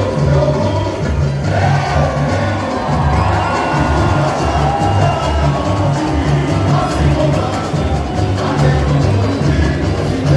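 Samba-enredo played by a samba school's bateria, its bass drums keeping a steady low beat under the melody, while a large crowd cheers.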